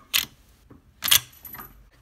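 Lever-action rifle action fitted with a short stroke kit being worked by hand: two sharp metallic clacks about a second apart, with a faint rattle of the parts between them.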